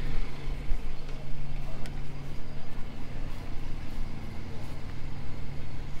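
A steady low motor hum, with an uneven wind rumble buffeting the microphone.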